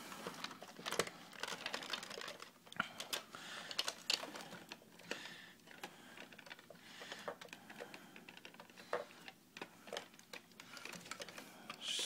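Plastic parts of a large transforming toy robot clicking, tapping and rubbing as they are handled and moved, in irregular faint clicks.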